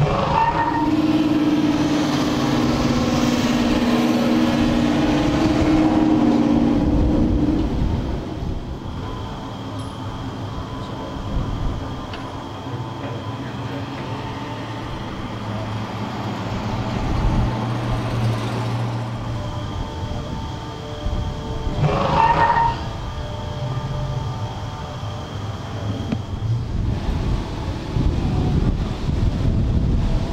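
Car engines running nearby: a steady engine drone for the first seven seconds or so, a lower steady hum in the middle, and a brief louder swell of engine noise about 22 seconds in.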